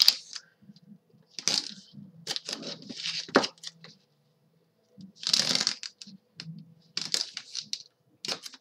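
One-inch score tape, a double-sided adhesive tape, being laid along a chipboard spine strip and rubbed down by hand: short, irregular bursts of tape and rubbing noise, with a light tick a little over three seconds in and a brief pause near the middle.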